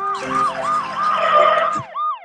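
Cartoon ambulance siren sound effect: a quick, repeating rise-and-fall wail, about three cycles a second, over a rushing noise that stops near the end.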